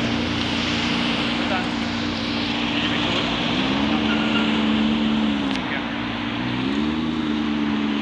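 McLaren P1's twin-turbo V8 running at low speed, a steady engine note that rises in pitch about three and a half seconds in, settles back, then rises again near the end as the throttle is lightly applied.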